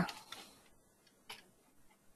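Faint computer keyboard keystrokes: a soft click, then a sharper one about a second and a half in.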